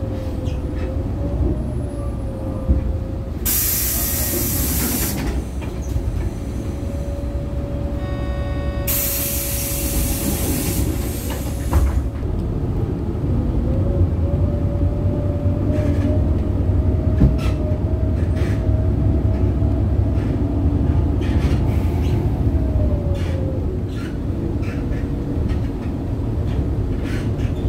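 Inside a moving city bus: a steady low engine and road rumble with a whine from the drivetrain that climbs about halfway through and drops back near the end. Two loud bursts of hissing air cut in, one a few seconds in and another around nine to eleven seconds in.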